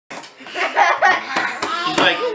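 A baby babbling in high, sing-song bursts, with laughter around him and a few sharp slaps of hands on the wooden tabletop.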